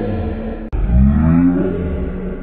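A deep, drawn-out voice rising in pitch, repeated as an edited loop: a sharp cut about two-thirds of a second in starts it over.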